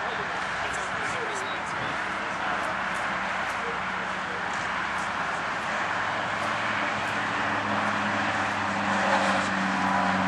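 Steady outdoor background hubbub; from about six seconds in, a vehicle engine idling joins as a low, steady hum that grows slightly louder near the end.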